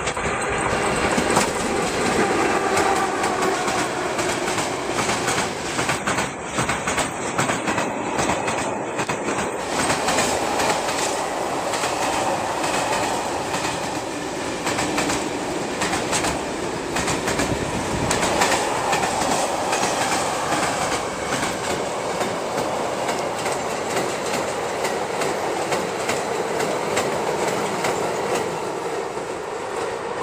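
A freight train behind a ČD Cargo class 123 electric locomotive passing close by. Its goods wagons' wheels roll and clatter over the rail joints in a steady run of clicks that starts loudly about a second in.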